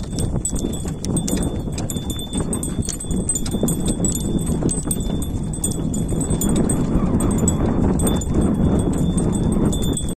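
A yoked pair of bullocks walking while pulling a wooden-poled farm implement. Their hooves fall in an irregular run of soft clip-clop steps, with clicks and knocks from the yoke and harness, over a steady low rumble.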